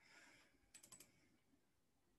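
Faint computer keyboard typing: a quick run of about four key clicks a little under a second in, otherwise near silence.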